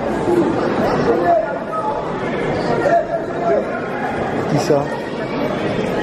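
Indistinct chatter of many people talking at once, steady throughout with no single clear voice.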